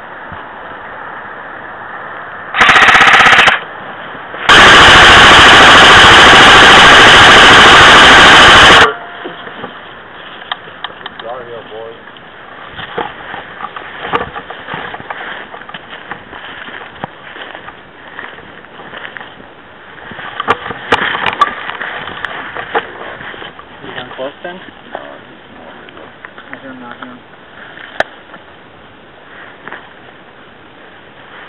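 Two bursts of full-auto fire from an airsoft electric gun right at the microphone, loud enough to distort: a short one about three seconds in and a longer one of about four seconds. Afterwards, scattered scuffs and steps on rock.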